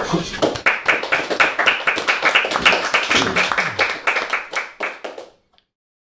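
Audience applause: many hands clapping densely, thinning out after about four seconds and stopping a little after five seconds in.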